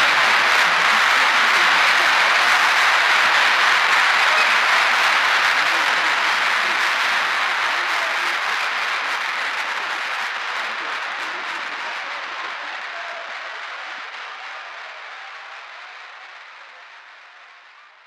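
Recorded crowd applause, a dense even clapping that fades out slowly over the whole stretch and is gone at the very end.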